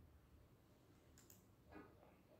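Near silence: faint room tone with two quick faint clicks a little over a second in, and a brief faint sound near the end.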